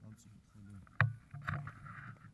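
Paragliding harness being fastened and adjusted by hand close to the microphone: rubbing and rustling of straps and fittings, with one sharp click about a second in from a buckle or clip.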